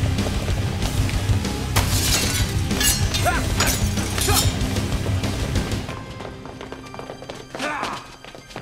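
Action-film score with a driving low beat, cut through by a few sharp crashing hits about two, three and four and a half seconds in. The music drops away in the last couple of seconds.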